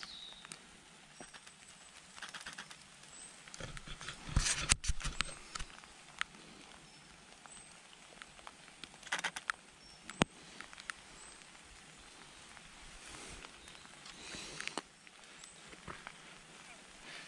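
Light rain pattering steadily, with scattered clicks and knocks from a camera being handled on a tripod, the loudest knocks about four to five seconds in.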